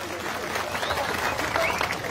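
Audience applauding: many hands clapping together in a dense, even stream.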